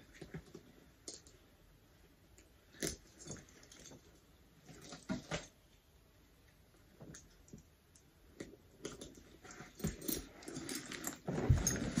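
Handling noise: scattered soft rustles and clicks as backpack straps are fitted to a diaper bag, with a low thump near the end as the bag is lifted.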